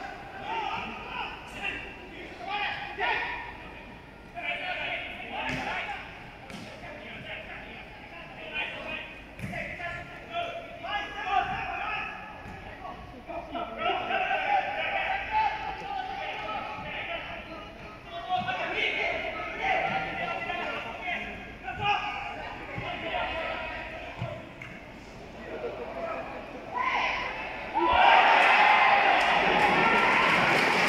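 Football match heard from the stands: intermittent shouting voices and sharp thuds of the ball being kicked, echoing around a large stadium. About two seconds before the end the crowd noise swells suddenly and loudly as play reaches the goalmouth.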